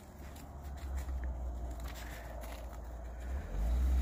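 A car's engine running with a low rumble as the car arrives, growing louder near the end.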